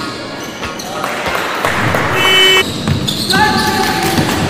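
Basketball game sounds on a hardwood court: a ball bouncing and players' voices echoing in a large gym. Two short, high-pitched tones stand out, the louder one about two seconds in and another from about three and a half seconds in.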